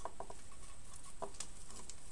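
A few light clicks and soft rustling from a flexible LED strip and its clear plastic battery box being handled and untangled.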